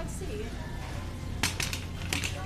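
A wire shopping cart rattling as it is pushed along: a short run of sharp clicks about one and a half seconds in, over a steady low hum.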